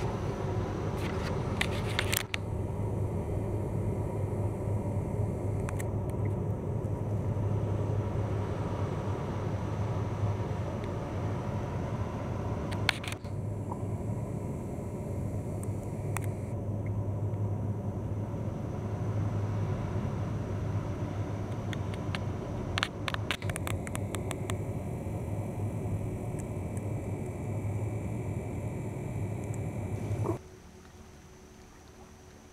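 Towboat's diesel engines droning steadily across the river, with a few faint knocks of handling now and then.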